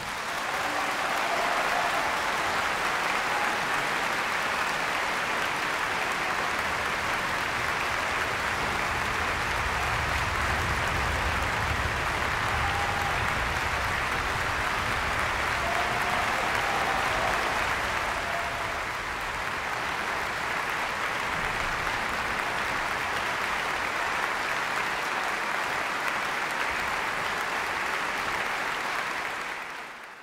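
Large concert-hall audience applauding steadily, fading out at the very end.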